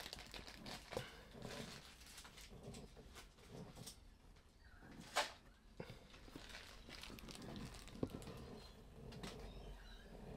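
Mostly quiet room with a few faint, scattered clicks and light taps, the loudest about five seconds in.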